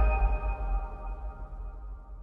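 Closing logo sting of a news outro: a deep bass boom under several ringing high tones, all fading away steadily.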